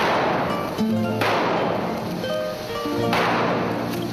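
Music with sustained notes, cut three times by sudden bursts of firecracker noise that each fade over about a second: at the start, about a second in, and about three seconds in.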